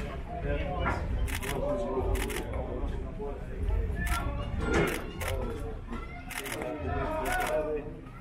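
Indistinct voices of several people talking and calling out, with irregular sharp clicks and knocks scattered throughout.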